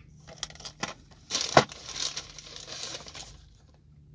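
Cardboard toy boxes with plastic display windows being handled and swapped, rustling and crinkling with scattered light knocks; the sharpest knock comes about a second and a half in.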